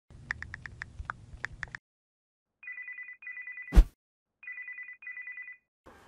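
About ten quick taps as a number is dialled on a smartphone. Then a telephone rings at the other end in a double-ring pattern, two double rings in all. A single sharp thump falls between the two rings.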